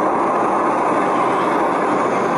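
Yogasleep baby sound machine playing its storm sound through its small speaker: a steady rushing noise.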